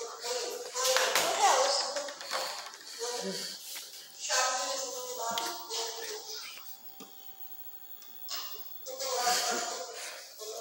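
A high-pitched human voice in short bursts without clear words, rising and falling in pitch. There is a quieter gap about seven seconds in.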